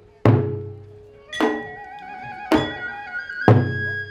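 Kagura accompaniment: a taiko drum struck about once a second, deep booming hits at the start and near the end with two sharper hits between. From about a second in, a high flute melody moves in steps over the drum.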